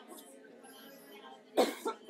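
A woman coughing, two short coughs close together about a second and a half in; the minister takes the coughing as demons coming out.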